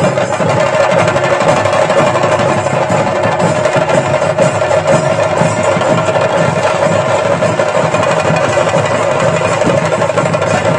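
Traditional Kerala ritual percussion, chenda drums played loud, fast and without a break, with a steady held note above the drumming.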